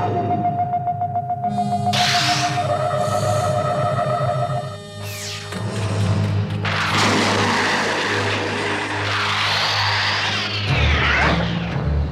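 Cartoon action music with a long held note over a steady low pulse, overlaid with whooshing sound effects for a super-speed run: short sweeps about two seconds in and near five seconds, then a long rising and falling sweep in the second half.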